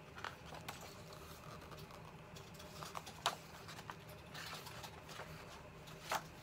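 Pages of a large picture book being handled and turned: faint paper rustles and a few light taps, the sharpest about halfway through.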